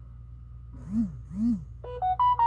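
Two short low hums whose pitch rises and falls, about half a second apart, over a steady low background hum. Near the end a phone's text-message notification tone starts, a few bright electronic notes, as the SMS carrying the verification code arrives.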